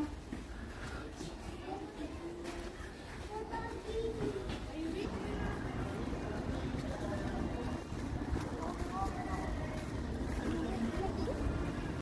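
Faint, indistinct voices of people talking among pedestrians, over a steady low rumble.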